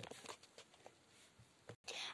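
Near silence, with a few faint light clicks of plastic pens being handled in the first second or so.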